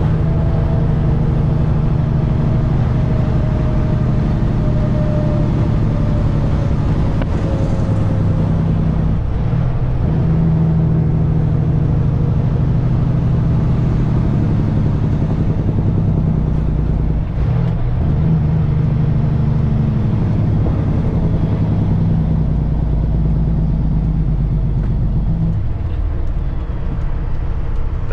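Caterpillar C15 twin-turbo diesel engine of a semi truck pulling a heavy load at road speed, heard from inside the cab as a steady low drone. Its pitch shifts briefly a few times.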